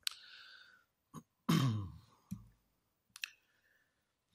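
A man clearing his throat, one voiced rasp falling in pitch about a second and a half in, amid breaths and mouth clicks.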